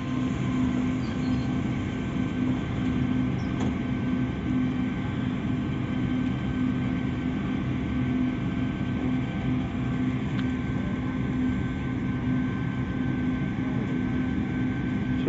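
Passenger railcar standing with its machinery running: a steady low hum with a faint thin whine above it, and a light click or two.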